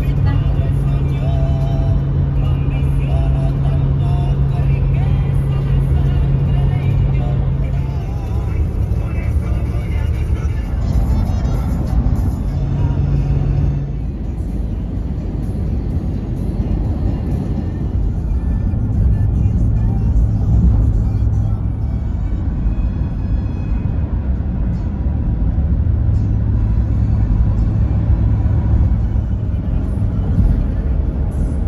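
Steady road and engine noise inside a car driving at highway speed, with music and a voice playing in the cabin over it.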